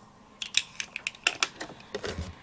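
Irregular light taps and clicks, about seven in two seconds, from hand-held stamping tools: a small ink pad dabbed onto a stamp and the plastic stamping platform being handled.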